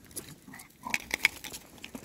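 Patterdale terriers on leashes scuffling at play, with short throaty dog noises and a few sharp clicks about a second in.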